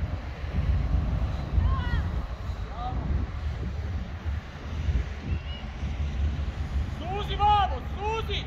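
Wind buffeting the microphone in a low rumble, with shouting voices on a football pitch: short calls about two and three seconds in, another a little past halfway, and a louder, longer shout near the end.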